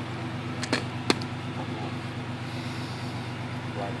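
Car engine idling steadily. Two sharp knocks come about a second in.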